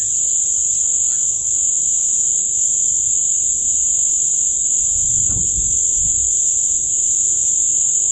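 Crickets chirring in a continuous, steady high-pitched trill, with a brief low rumble about five seconds in.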